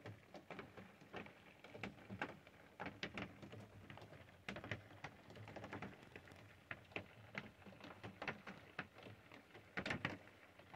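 Faint, irregular light taps and ticks, several a second, with a louder cluster near the end.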